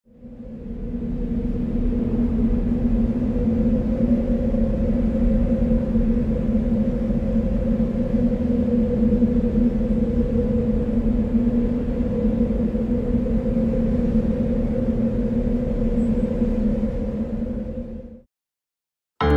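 Steady low rumbling drone with a held hum. It fades in over the first second and holds unchanged until it stops suddenly at the end.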